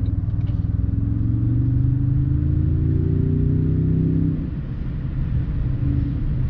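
Twin-turbo V6 of a 2022 Toyota Tundra TRD Pro, heard through a mic under the hood, accelerating hard in sport mode with its pitch rising steadily for about four seconds, then dropping away suddenly. It is breathing through a freshly fitted TRD performance air filter, which brings out more turbo sound.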